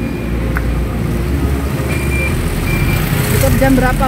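A motor vehicle running on the road alongside: a continuous low engine rumble, with three short, high beeps in the first three seconds. A voice comes in near the end.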